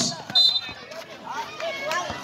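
A short, high referee's whistle about half a second in, followed by faint voices of players and spectators.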